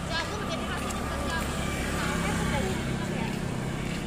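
Street noise: a motor scooter's engine rumbling past, growing louder in the second half, with the voices of passers-by in the background.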